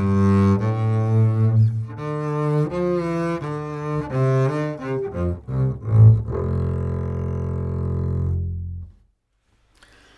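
Double bass played arco on Pirastro Evah Pirazzi Light strings: a melodic phrase of sustained bowed notes, with a few quicker short notes about five to six seconds in, ending on a long held note that stops about nine seconds in.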